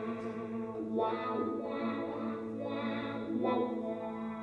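Slow live music on an acoustic guitar played through effects: a few chords struck one after another over a steady held low note.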